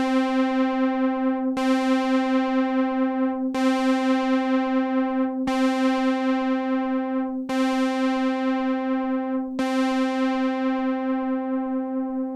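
A single synthesizer note played through a June-60 chorus pedal, struck six times about every two seconds, each strike bright at first and then mellowing. The pedal is in chorus mode two with its left internal trim pot turned nearly fully clockwise, which slows the chorus sweep to maybe half its factory speed.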